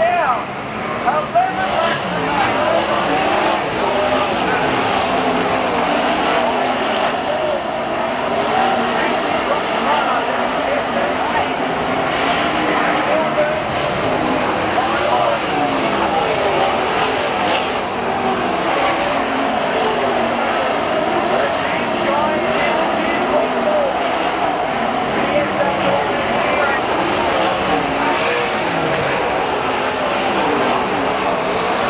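A pack of sprint cars racing on a dirt oval, their V8 engines revving up and down in many overlapping, gliding pitches without a break.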